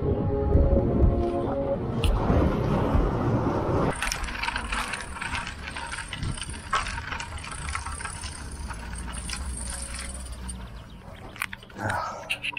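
Faint background music for the first couple of seconds, over a rush of riding noise. About four seconds in, the sound cuts to irregular small clicks and rattles as a road bicycle and an action camera are handled at a stop.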